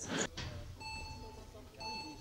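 Speed-climbing start signal: two identical electronic beeps about a second apart, each lasting about half a second. They are the lead-in tones of the start countdown.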